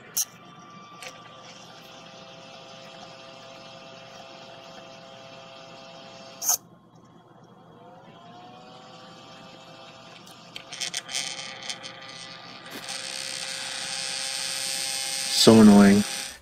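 Small cooling fans of a GeeekPi dual-fan Raspberry Pi heatsink running with a steady whine. About six and a half seconds in, the whine stops with a click, and a second later the fan spins back up with a rising pitch. Later the fan rattles and then a louder buzz sets in: the vibration of a faulty fan.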